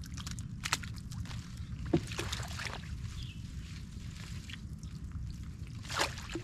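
Footsteps and rustling as a person pushes through tall grass and leafy bushes: a scatter of short crackles and snaps of stems and leaves, the sharpest about two seconds in and another at the very end, over a steady low rumble.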